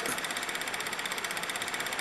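A steady mechanical hum with a fast, even pulse, like a small motor running.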